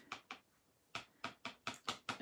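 Light taps and clicks of a rubber stamp and ink pad being handled before inking: two early, then five more from about a second in, coming quicker toward the end.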